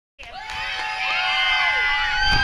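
A group of children cheering and shouting together, starting suddenly a moment in with many held, overlapping shouts, some voices sliding down in pitch near the end.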